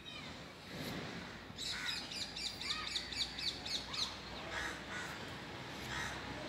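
Birds calling: a fast run of high, short chirps, about six a second, begins near two seconds in and lasts about two and a half seconds, with a few lower, separate calls before and after it.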